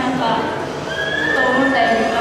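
Onlookers' voices echoing in a large indoor hall, with a high, drawn-out squealing cry starting about a second in.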